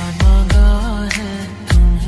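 Bollywood love song: heavy bass beats, two close together near the start and another near the end, under a voice singing a wavering, ornamented line.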